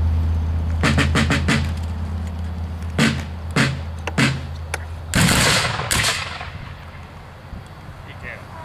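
A field drum rolls briefly about a second in and is struck three times, then a line of Civil War-style rifle-muskets fires a ragged salute volley about five seconds in, with one more shot just after, the reports echoing away.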